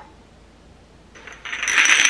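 Small glass shot bottles clinking and rattling against each other in a plastic tray as the tray is lifted. After a quiet first second, the jingling starts and runs on as a dense chatter with a thin ringing note.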